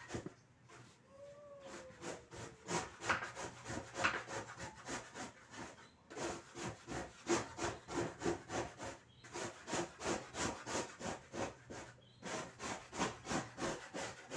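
A hand tool rubbing and scraping back and forth on a board in steady strokes, about two to three a second. The strokes come in runs of a few seconds with short pauses between them.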